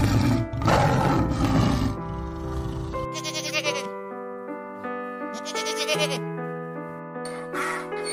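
Light background music throughout, with a tiger's rough growl in the first two seconds. Two short goat bleats follow, one a little after three seconds and another around five and a half seconds.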